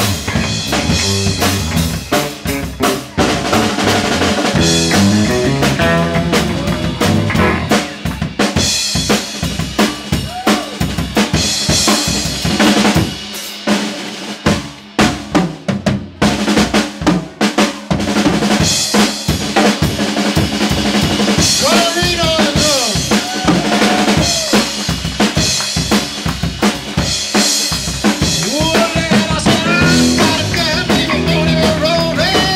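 Live rock-and-roll band playing an instrumental passage: a Ludwig drum kit driving hard with kick, snare and rimshots over electric bass and electric guitar. In the second half, bending, sliding lead notes come in over the beat.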